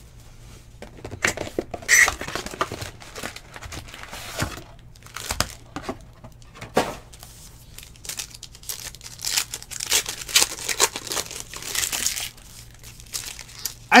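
Plastic wrapper of a pack of baseball cards being torn open and crinkled by hand, in irregular crackling rustles that come in clusters, loudest about two seconds in and again near the end.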